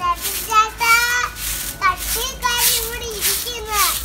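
A young child's high voice calling and sing-song vocalising in short gliding phrases. Under it come repeated scratchy strokes of a stiff hand brush scrubbing stone.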